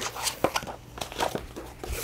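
Light paper rustling with a few soft clicks and taps as a letter sheet and a paperback book are handled.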